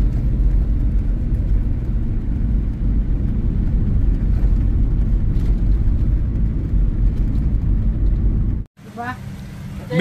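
Steady low rumble of road and engine noise inside a moving car's cabin, cutting off suddenly near the end.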